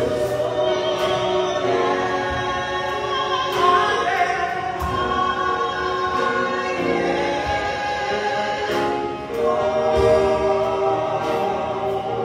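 Live gospel music: two women singing into microphones, with sung lines rising and falling, backed by drums and keyboard, with occasional cymbal or drum hits.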